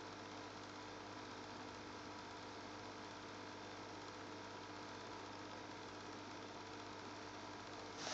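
Steady low hum with a faint hiss, even and unchanging.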